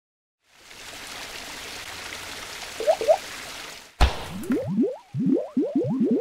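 Sound-design logo sting: a hiss swells for about three seconds with two short chirps in it, then a sharp hit about four seconds in, followed by a quick run of short rising bloops, about three a second, like liquid splats.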